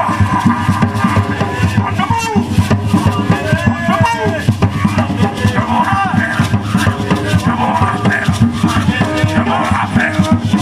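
Live gwo ka music: several hand-played ka drums in a dense, driving rhythm, with the boula drums holding the beat under the improvising makè lead drum. A shaker rattles and voices sing over the drums.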